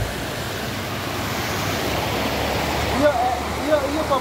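Floodwater rushing down a street and tumbling over a step in a steady, churning rush. A voice starts talking over it near the end.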